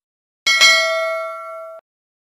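Bell-like ding sound effect, the kind used for a notification bell: struck about half a second in with a quick double hit, then ringing with a few clear tones for just over a second before cutting off suddenly.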